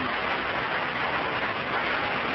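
Steady, loud hiss of an old, heavily degraded speech recording, with no voice coming through it.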